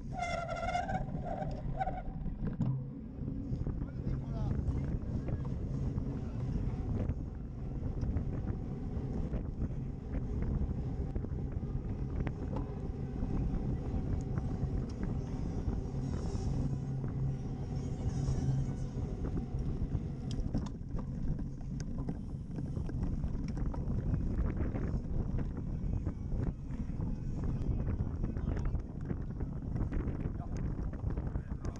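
Steady rumble and rattle of a cyclocross bike ridden at race speed over grass and paving, picked up by a camera mounted on the bike, with wind noise on the microphone. A short high squeal comes in the first two seconds.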